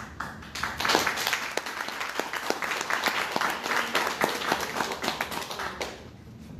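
Audience applauding, building up in the first second and stopping abruptly just before the end.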